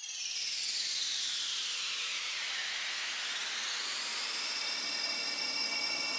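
Opening of an electronic music track: a swell of synthesized white noise whose bright filtered band sweeps down and then back up, over faint held synth tones, with no beat yet.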